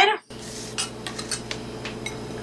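A few light clinks of a metal fork against a small glass bowl as the bowl is moved aside and set down, over a steady low hum.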